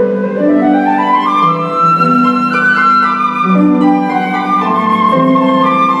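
Flute and concert harp playing a classical duo, a melody climbing by steps over the first two and a half seconds and then settling back down above low harp notes.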